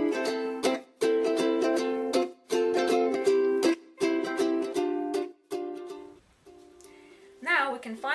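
Upbeat ukulele backing music: plucked chords in phrases about a second long with short breaks between them, softer after about five seconds. A woman's voice comes in near the end.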